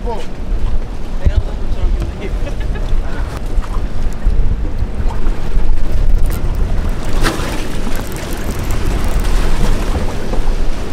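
Wind buffeting the microphone in a steady low rumble, over the wash of the sea around a fishing boat, with scattered light clicks and knocks.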